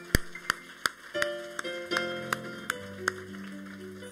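Soft instrumental vamp from a live band: held chords that change every second or so over a steady, light ticking beat of about three ticks a second.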